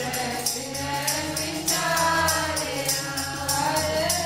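Sikh kirtan: several voices sing together over a harmonium's reedy drone. Tabla and handheld clappers keep an even beat of about three strokes a second.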